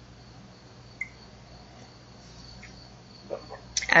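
Quiet room tone of a pause in a voice recording, with a faint steady high-pitched whine and a low hum throughout; a voice starts right at the end.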